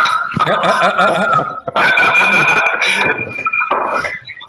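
Audio looping back through a video call: a steady high feedback whistle held over warbling, distorted echoes, with a short break about one and a half seconds in.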